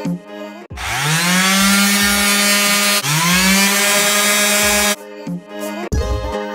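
Hand-held electric random orbital sander sanding pine floorboards. It spins up twice with a rising whine, about a second in and again about three seconds in, runs steadily each time, and cuts off near the end.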